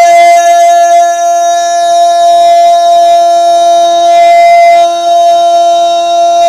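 A naat singer holds one long, steady note, with a lower drone an octave beneath it. The note comes at the end of a sung line, and the drone drops out briefly about four and a half seconds in.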